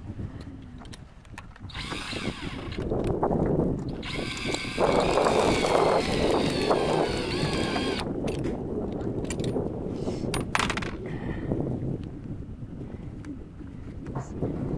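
A cordless drill whines in two runs, a short one about two seconds in and a longer, louder one from about four to eight seconds that stops abruptly. It is screwing an ice anchor into lake ice to tie down a pop-up ice fishing shelter. Scattered clicks and knocks follow as the strap is handled.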